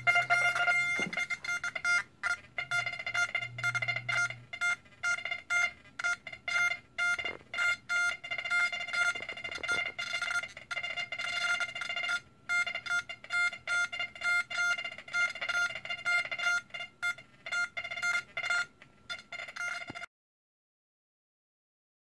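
XP Deus metal detector control box sounding its target-response tone: a steady-pitched electronic beep repeated in quick, uneven pulses. It cuts off suddenly near the end.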